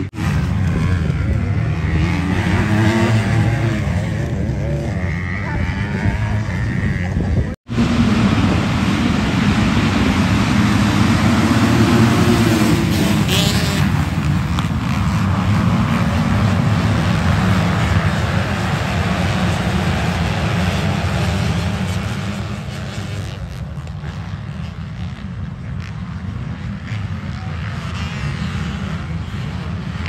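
Motocross dirt bikes racing, many engines revving together as a pack rides through a turn. The sound drops off somewhat about two-thirds of the way through.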